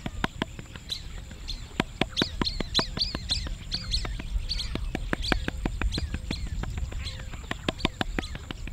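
Hands patting and pressing flatbread dough on a floured wooden board: soft, irregular pats. Small birds chirp throughout, busiest from about two to five seconds in.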